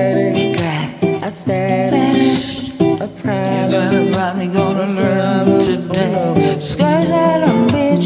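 Acoustic guitar accompaniment playing strummed and picked chords, a karaoke backing track.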